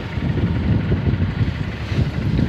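Motorcycle engine running as the bike rides along a dirt track, a dense, uneven low rumble.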